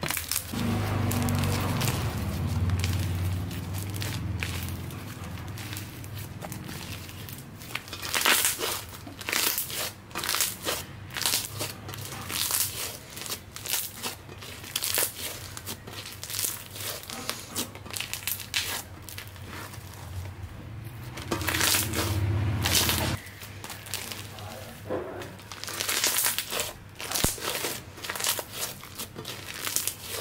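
Slushy slime layered over basic slime, kneaded and pressed by hand, giving very crunchy, dense crackles and pops in quick, irregular runs. A low muffled rumble from the pressing sits under the crackling in the first few seconds and again about two-thirds of the way through.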